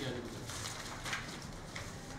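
Sheets of paper being handled and turned, with a few short rustles.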